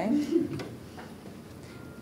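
A brief low voiced murmur at the very start, then a few faint light clicks in a quiet room.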